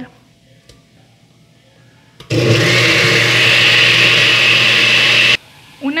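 Countertop blender motor running for about three seconds, grinding chopped poblano chile, cilantro and spinach with water into a green purée. It starts abruptly about two seconds in and stops abruptly shortly before the end.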